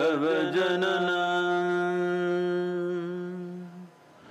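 A man's voice chanting a mantra during a meditation: the pitch wavers for about the first second, then settles into one long, steady note that fades away just before the end.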